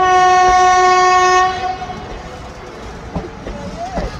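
Train horn of a departing Indian Railways express, one long steady blast that stops about a second and a half in, followed by the rumble and wheel clatter of the moving coaches.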